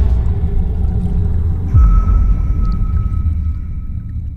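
Cinematic trailer sound design: a deep rumbling drone, then a heavy low boom that drops in pitch a little before halfway. A thin, steady high tone is held over the boom and fades away with it toward the end.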